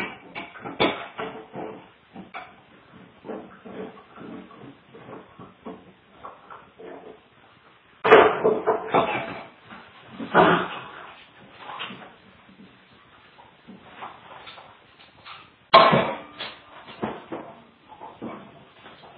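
Two dogs playing on a tile floor, heard through a home security camera's microphone: a run of irregular clicks, scuffles and knocks, with louder noisy bursts about eight, ten and a half and sixteen seconds in.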